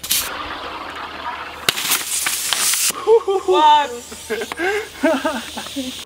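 Compressed-air water bottle rocket launching: the stopper pops free with a sudden loud burst and the air and water rush out with a hiss, followed by a second, longer rush about 1.7 s in. From about three seconds on, a man's excited voice exclaims.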